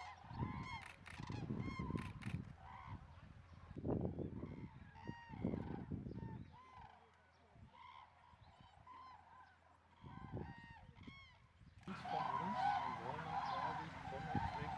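Common cranes calling: repeated, trumpeting calls from several birds. A low rumble comes and goes in the first half. Near the end a louder, denser chorus of many cranes calls at once.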